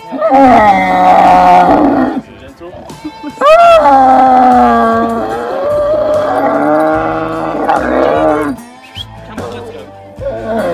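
A kneeling, muzzled dromedary camel groaning loudly as it is saddled for a rider. There are two long drawn-out calls whose pitch slowly bends, a shorter one at the start and a longer one of about five seconds from about three and a half seconds in.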